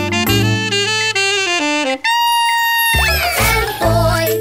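Saxophone playing a jazzy run of notes stepping downward, then a long held high note, then a steep downward pitch slide.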